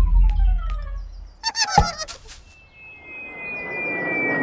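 Cartoon sound effects. A low rumble fades out under a falling whistle, then a short burst of high, wavering squeaky chatter with a sharp click comes about halfway through. Near the end a rising whoosh builds with a slowly falling whistle tone.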